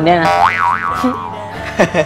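A comic boing-like sound effect, two quick rising-and-falling pitch sweeps about half a second in, over steady background music.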